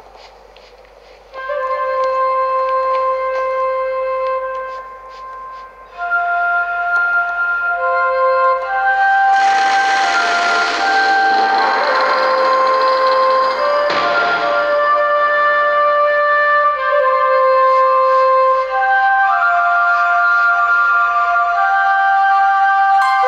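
Game music with a flute-like melody playing from the Xiaomi Mi 11T Pro's top and bottom speakers in a speaker test. The music starts about a second in, and a rush of noise swells over it from about nine seconds in until about fifteen.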